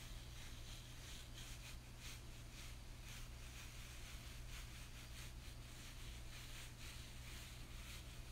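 Faint, soft, scratchy swishes of a hair brush rubbed in repeated, irregular strokes over short hair to start locks, over a low steady hum.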